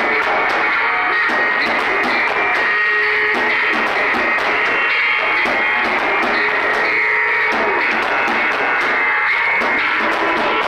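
Live experimental noise-drone music: a loud, unbroken wall of distorted sound with a few sustained tones held through it.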